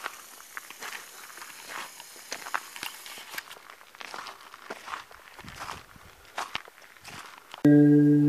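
Irregular soft crackling and crunching, scattered and uneven. Near the end, music on a mallet instrument such as a marimba comes in suddenly and much louder.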